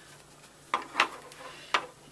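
Three light taps and knocks from handling a wood-mount rubber stamp and an ink pad as they are moved and set down on a paper-covered tabletop.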